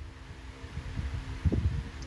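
Low, uneven rumbling noise with a faint steady hum, heard through a video call's audio, with a louder rumble about one and a half seconds in.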